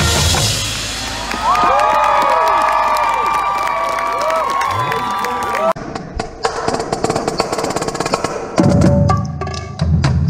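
Marching band brass holding notes with swooping pitch bends, then after an abrupt cut a drumline playing: rapid snare and quad-drum strokes with stick clicks, and heavy low drum hits coming in near the end.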